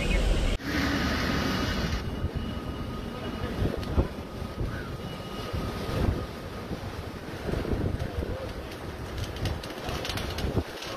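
Hurricane wind and heavy rain rushing against the microphone, a steady noise with a few sharp knocks.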